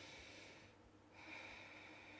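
Faint breathing through the nose, near silence: one breath fading out within the first second, and another starting a little after a second in.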